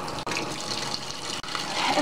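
Top-loading washing machine filling with water at the start of a cold water cycle: a steady rush of water pouring into the tub from the inlet.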